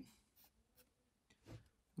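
Faint pencil strokes scratching on sketchbook paper: a few short strokes as lines are drawn in.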